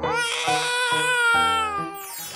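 A baby crying: one long wail that rises at the start and then holds, over children's background music.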